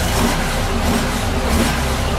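Honda Gold Wing motorcycle engine running with a steady low rumble.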